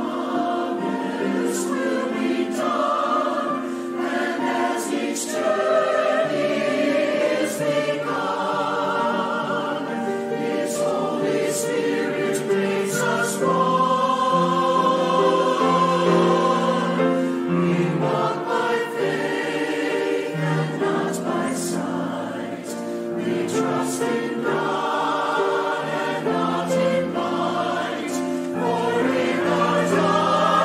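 Mixed choir of men's and women's voices singing, accompanied by grand piano.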